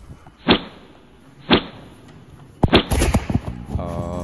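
Two sharp knocks about a second apart, then a quick run of clicks and knocks; music starts just before the end.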